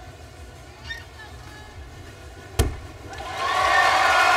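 A gymnast landing her full-twisting double back dismount from the uneven bars onto the mat: one sharp, deep thud about two and a half seconds in. Arena crowd cheering and applause swell up right after it.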